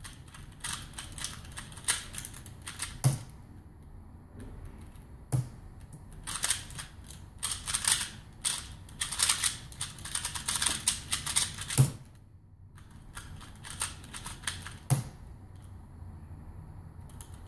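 Rapid plastic clicking of a QiYi Wuxia 2x2 speed cube being turned, in a dense run lasting about six seconds in the middle, with lighter clicking around it. A few single sharp knocks stand out, the loudest closing the run of turning.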